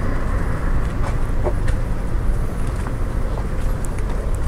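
Outdoor street background noise: a steady low rumble with no distinct events.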